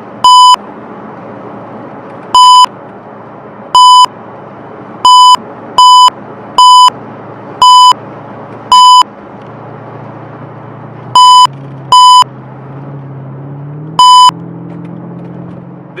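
Eleven short, loud censor bleeps, a steady single-pitched beep tone standing in for curse words, spaced irregularly over the steady road noise of a moving car's cabin.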